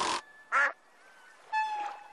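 Cartoon sound effects for a fishing cast: a short swish at the start, a short nasal quack-like sound about half a second in, then a thin tone falling slightly in pitch near the end.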